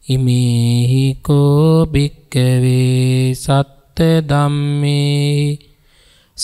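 A Buddhist monk's voice chanting Pali verses, slow and melodic. The phrases are long and drawn out on level held notes, with short pauses for breath between them.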